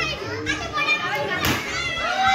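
Children's voices shouting and chattering, with one sharp pop about one and a half seconds in as a confetti popper goes off.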